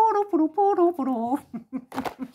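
A woman's voice tooting a short tune of several held notes, imitating a pan flute, as she holds a row of marker pen caps to her mouth like panpipes. The tune falls away about a second and a half in, and a small click follows near the end.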